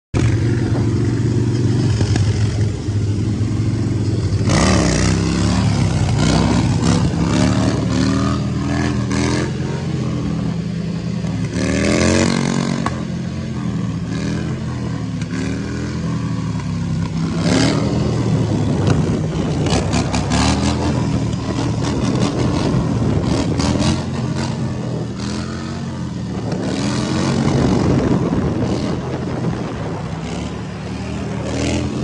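Harley-Davidson V-twin motorcycle engine, steady for the first few seconds, then revved hard and eased off again and again as the bike is pulled up into wheelies. Its pitch rises and falls roughly once a second, with one long climbing rev near the middle.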